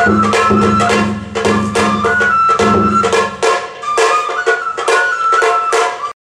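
Japanese kagura-bayashi festival music: a high bamboo flute melody with held notes over regular drum strokes. A low drone underneath drops out about halfway through.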